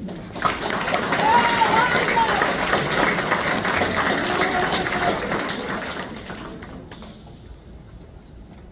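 Audience clapping, with a few voices cheering over it. The applause fades away over the last couple of seconds.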